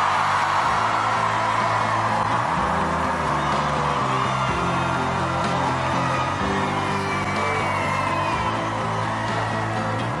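Background music with a steady bass line under a crowd cheering and whooping. The cheering is loudest at the start and slowly eases off.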